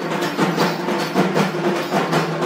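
Temple ritual drumming: hand drums beaten in a rapid, steady rhythm.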